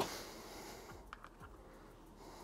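Faint handling sounds: a soft breath-like hiss fading over the first second, then a few small clicks as the power brick's plug is pushed into the LED studio light.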